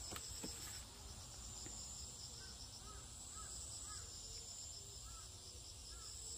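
Faint, steady high-pitched insect chirring, with a few soft short chirps in the middle.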